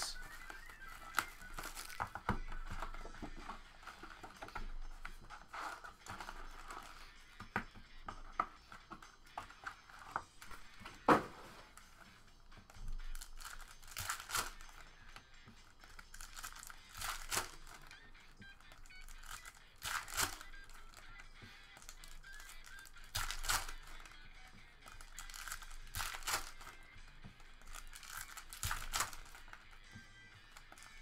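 Foil trading-card packs being torn open, with their wrappers crinkling and the cards rustling, in short rips every few seconds over faint background music. The sharpest snap comes about a third of the way in.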